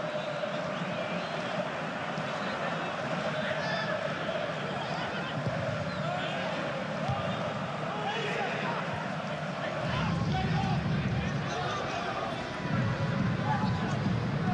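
Pitch-side audio of professional football played in an empty stadium: players' distant shouts and calls over a steady open-air hum, with a few ball kicks. A heavier low rumble comes in about ten seconds in.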